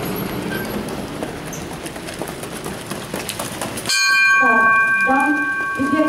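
Open-air noise with scattered clicks, then about four seconds in a loud, steady, multi-pitched ringing tone cuts in suddenly over the racecourse loudspeakers, with the announcer's voice starting on top of it.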